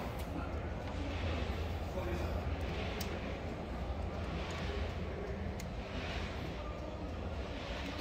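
Faint clicks and scrapes of an Allen key working the bolts that hold a CNC router's gantry to its side plate, as they are loosened, over a steady low background hum.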